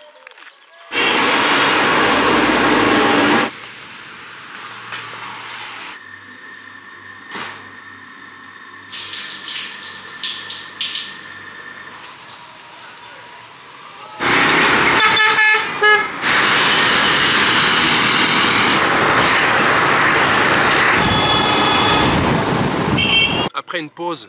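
Town street sounds cut together from several short clips, each starting and stopping abruptly. There are long stretches of loud traffic noise, vehicle horns tooting a few times, and voices.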